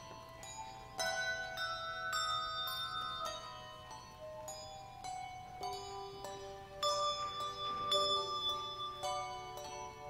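A handbell choir playing a piece: handbells struck in chords and single notes, each note ringing on and overlapping the next, with louder strikes about a second in and again near seven seconds.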